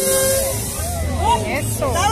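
Voices calling out among a crowd, with rising-and-falling shouts near the end, over the low bass of dance music.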